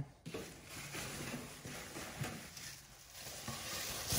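Faint rustling and crinkling of packaging wrap as a new oven tray is handled, with a few small ticks.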